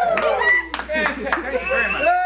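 Several sharp, irregular hand claps over a voice making long, drawn-out sounds.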